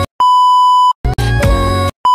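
A steady, high test-tone beep of the kind paired with colour bars, lasting under a second, then a loud snatch of music under a second long, cut off abruptly just as the beep starts again.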